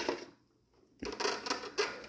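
Several light clicks and taps of hard plastic as a hand works the top glove-box opening of a Toyota Supra MKIV dashboard. The clicks come in the second half, after a moment of dead silence.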